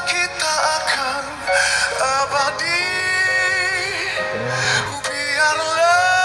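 A male vocalist sings a mellow ballad over backing music. Through the middle he holds one long note with vibrato.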